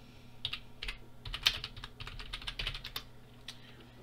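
Typing on a computer keyboard: a quick run of keystroke clicks, thickest from about a second in to three seconds in.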